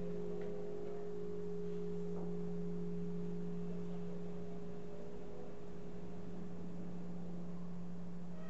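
Deep hum of large church bells ringing on after being struck: two steady low tones hold throughout and fade slowly, with only faint traces of fresh strokes.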